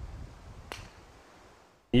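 Golf club striking a teed ball: one sharp click about two-thirds of a second in, over a low outdoor hiss.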